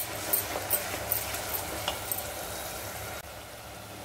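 Chopped onions and ginger-garlic paste sizzling in oil in a clay pot, with a wooden spatula stirring and scraping against the clay in a few sharp clicks; the stirring stops and the sizzle quietens near the end. A low steady hum runs underneath.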